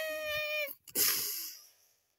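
A meow, one call held on a fairly steady pitch for under a second, followed by a short breathy hiss that fades out.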